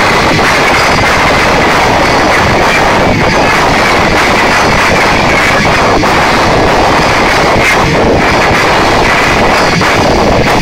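Rock band with electric guitars playing very loud, recorded so hot that the sound is a dense, overloaded wall of distorted noise with a steady high tone running through it.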